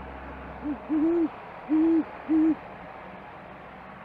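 Great horned owl hooting: a deep four-note hoot, a short first note followed by three longer ones, over about two seconds.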